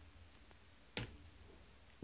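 A single keyboard keystroke about a second in, against near silence: the key press that sets off a Flutter hot reload in the terminal.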